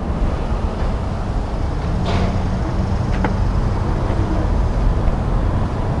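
A car door being opened, with a single sharp latch click about three seconds in, over a steady low rumble.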